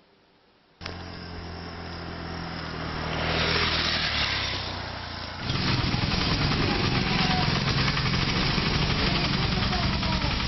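Night street traffic cutting in about a second in: vehicle engines running, with a vehicle passing a few seconds in. From about halfway through, a louder, steady engine rumble.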